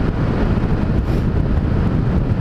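Honda motorcycle cruising at highway speed: a steady engine drone buried under heavy wind rush on the helmet-mounted camera's microphone.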